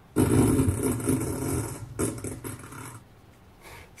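A roar sound effect played from a phone through the RV's swivelling speakers, aimed outside as a prank on passers-by. One long roar of about two seconds, then a shorter one that fades away.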